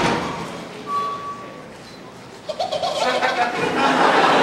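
Ocarina notes on the skit's soundtrack after the rock music cuts off: one held high note about a second in, then lower notes from about two and a half seconds.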